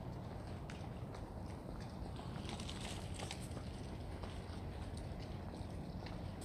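Quiet outdoor ambience: a steady low rumble with a few light ticks about halfway through.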